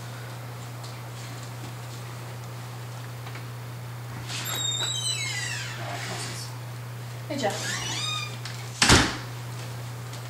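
Front door hinges squealing with falling pitch as the door swings open, about four seconds in and again about seven seconds in. A single loud bang follows near the end, over a steady low hum.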